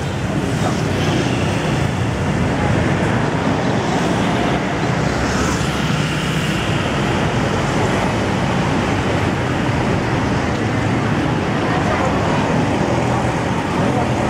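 Steady traffic noise from a busy city street, with cars and motorbikes running past.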